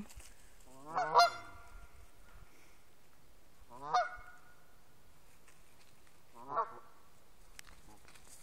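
Canada geese honking: three separate rising honks spaced about three seconds apart, the first, about a second in, the loudest.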